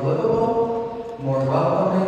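Only speech: a man talking slowly into a microphone, with long drawn-out vowels.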